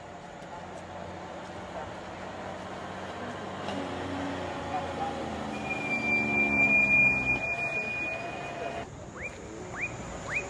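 Heavy truck engine approaching and growing louder, peaking about seven seconds in. A steady high squeal runs for about three seconds as it nears. Near the end come a few short rising whistles.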